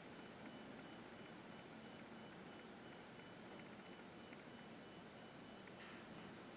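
Near silence: room tone, with a faint steady high tone.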